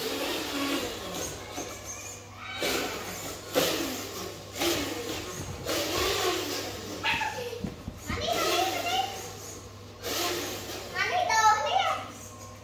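Children talking and calling out as they play, voices coming and going throughout, with a high-pitched child's call near the end.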